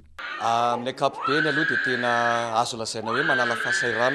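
A man's voice speaking, with long drawn-out vowels held for about a second at a time between shorter syllables.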